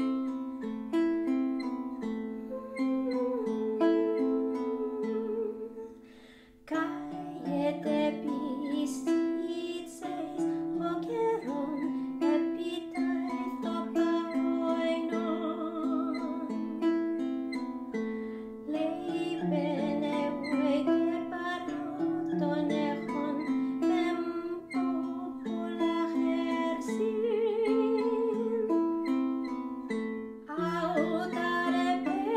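A woman singing Ancient Greek epic verse to her own accompaniment on a plucked phorminx, an ancient Greek lyre. The notes are plucked one by one under a wavering, sustained voice. The music dies away about six seconds in and starts again just after.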